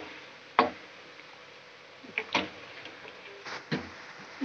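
A metal spoon clinking against the side of a metal pot of heating milk as it is stirred: about five sharp clicks spread unevenly, the first the loudest, over a low hiss.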